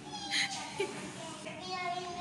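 Young children's voices during play: a short high squeal about a third of a second in, then a drawn-out high-pitched call near the end.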